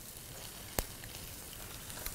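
Salmon searing in a very hot pan, sizzling steadily, with a single sharp click a little under halfway through.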